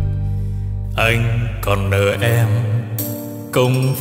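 Vietnamese bolero band playing an instrumental interlude between sung lines: sustained bass and chords, with a lead melody with a wide vibrato coming in about a second in.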